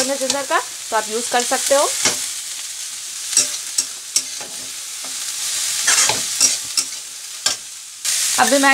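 Chopped cabbage sizzling in hot oil in a kadhai as a spatula stirs it, with repeated sharp scrapes and knocks of the spatula against the pan.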